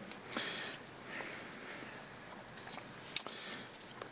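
Faint handling noise and a few light metal clicks as a tiny steel workpiece is fitted by hand into a miniature insert V-block, with one sharper click about three seconds in.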